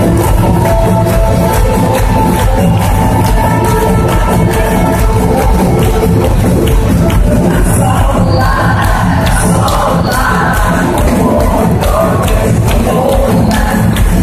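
A live band plays loud amplified music with a steady drum beat through an arena PA, and the crowd can be heard beneath it.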